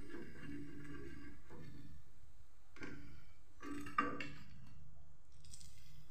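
A few short clinks and knocks from a metal slotted spoon against the iron kadhai and a ceramic plate as fried bread rolls are lifted out of the oil and set down, the sharpest about four seconds in, over a steady low hum.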